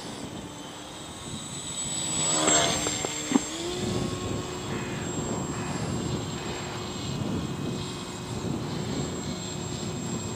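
Small electric motor and propeller of a 3 mm Depron RC flying wing in flight. Its pitch rises and shifts about three seconds in, with a sharp click, then it holds a steady hum with a faint high whine over a rushing hiss.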